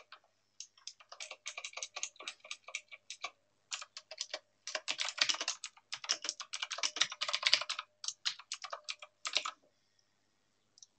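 Typing on a computer keyboard: quick runs of key clicks in bursts, densest in the middle, stopping shortly before the end.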